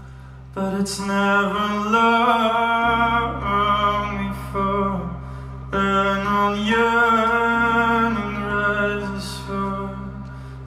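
Live music: a man singing long, held, wavering notes with no clear words over a steady low drone, in two long phrases starting about half a second and about six seconds in, accompanied by an oud.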